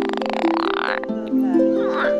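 A green frog gives a rapid, rattling pulsed croak that stops about a second in, heard over background plucked-string music.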